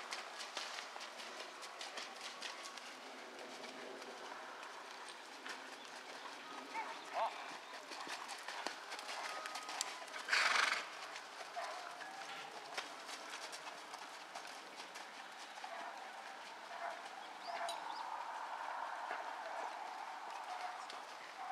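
Hoofbeats of a Thoroughbred horse trotting on wet, muddy dirt arena footing, a steady run of soft thuds. About halfway through there is a short, louder rushing burst.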